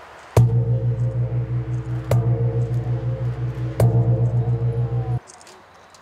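A large bossed gong struck three times, about one and a half to two seconds apart, each stroke ringing on in a deep, pulsing hum. The ringing cuts off abruptly a little after five seconds in.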